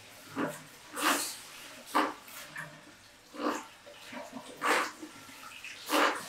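Water from a handheld shampoo-basin sprayer splashing over hair and face into the basin in short, separate bursts, about one a second.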